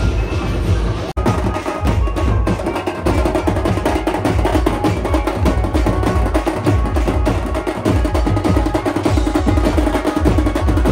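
Loud festival procession music with dense drumming and a heavy bass beat. The sound drops out for an instant about a second in.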